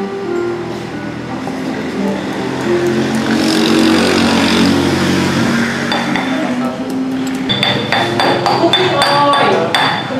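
Pestle pounding curry paste in a stone mortar, a quick run of knocks in the last few seconds, over background music with a held melody.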